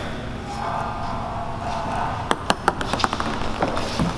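Ping-pong ball rolling along a skatepark grind rail with a steady rolling sound, then clicking in about five quick light bounces a little over two seconds in.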